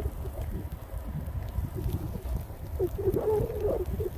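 Low, irregular rumble of wind buffeting the phone's microphone while moving across snow, with a short wavering hum about three seconds in.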